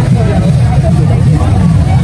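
Hubbub of a dense outdoor crowd, many voices overlapping, over a loud, constant low rumble.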